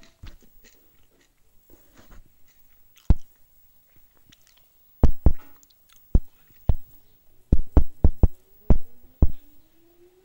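Chewing and biting sounds on a TV comedy soundtrack, picked up off the television's speaker: sharp, crunchy clicks, one about three seconds in and about ten more in quick, irregular succession in the second half.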